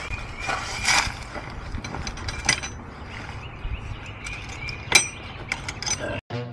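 Scattered metallic clicks and clinks of hand tools being handled, with one sharper knock about five seconds in and a few quick clicks near the end.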